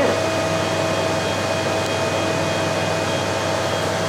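Steady fan-like machine hum with a few faint constant tones running through it, unchanging throughout.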